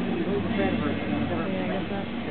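Indistinct chatter of many people talking at once, no single voice standing out, over a steady low hum.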